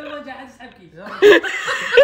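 Men laughing and chuckling among low talk, with a loud burst of laughter a little over a second in and another near the end.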